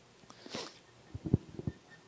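A quick sniff close to a handheld microphone about half a second in, then several soft low thumps.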